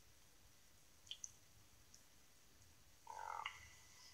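Near silence: room tone, with two tiny clicks about a second in and a brief faint sound just after three seconds.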